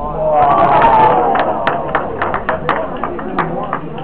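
Spectators react to a shot: voices call out at the start, followed by a run of scattered, irregular hand claps.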